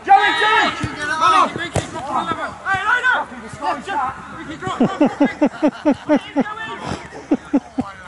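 Players and spectators shouting on a football pitch. There is a single sharp knock of a ball being kicked about two seconds in, and a quick run of short repeated shouts near the end.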